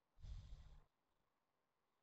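A single short, faint exhale into a headset microphone, lasting well under a second, with a breathy puff of air on the mic.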